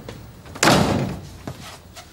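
An apartment front door shut with a loud bang about half a second in, dying away quickly, followed by a smaller click or knock a second later.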